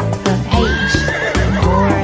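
A horse whinnying: one long wavering call starting about half a second in, over upbeat children's backing music with a steady beat.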